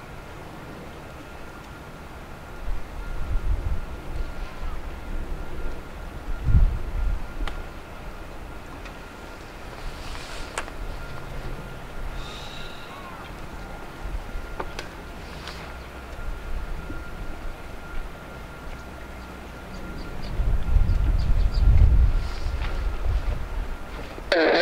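AV-8B Harrier's Pegasus turbofan running at low power as the jet taxis at a distance: a steady thin whine over a low rumble, which swells in louder low surges a few seconds in and again near the end.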